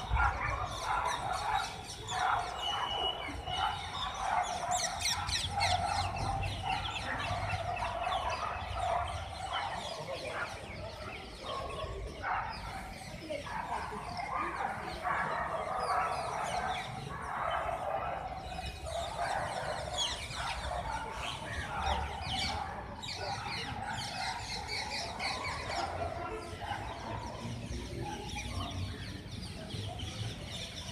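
A dense chorus of many birds chirping and calling at once, without a break, over a steady low rumble.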